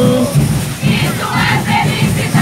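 A Congada Moçambique group singing call and response. A lead singer's voice through a microphone ends just after the start, then many voices answer together about a second in, over beating drums.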